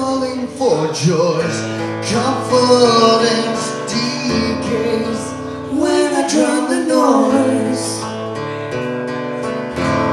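Live acoustic song: a steel-string acoustic guitar played with a man singing through a microphone, the voice coming in phrases over the guitar.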